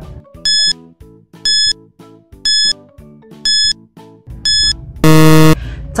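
Quiz countdown timer: five short high beeps, one a second, then a longer, louder low buzzer as time runs out, over soft background music.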